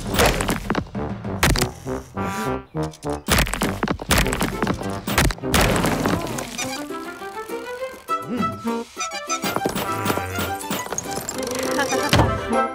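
Cartoon background music with a string of heavy knocks and smashing sound effects through the first half, as a wrecking ball pounds a rock until it breaks apart.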